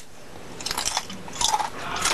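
A person biting into and chewing a large, hard chip, with irregular crisp crunches.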